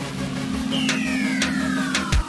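Synthesized outro music and sound effects: a steady low electronic hum with a falling pitch sweep starting a little under a second in and a few sharp clicks, building toward a drum-and-bass beat.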